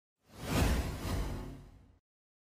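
Broadcast replay-transition whoosh sound effect: a swish over a deep low rumble that comes in about a quarter second in, swells, then fades over about a second and a half before cutting off abruptly.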